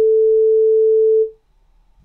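A single steady beep, one pure mid-pitched tone held for about a second and a half, then fading out. It is the signal tone of an exam listening recording, marking the start of the repeated passage.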